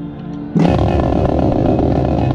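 Marching snare drum breaking into a fast, loud roll about half a second in, over the band's sustained low notes.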